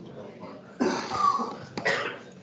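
A person coughing: a longer loud burst about a second in and a short second one near the end.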